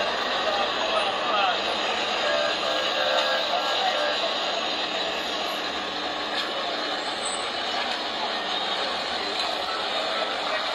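Steady street noise at a road crash scene: traffic sound mixed with many people's voices talking at once.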